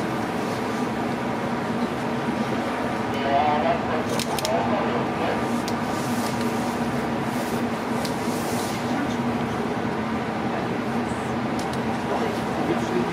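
Steady hum of a coastal passenger ship's machinery heard from the open deck, with indistinct voices of people talking in the background, most noticeable about four seconds in.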